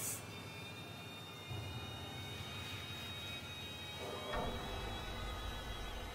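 Background film score: a low, steady ominous drone with a held high tone, deepening about four seconds in.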